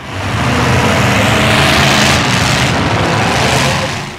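Demolition derby cars' engines running hard and revving, loud and rough, under a wide rush of noise. It rises out of silence at the start and drops away near the end.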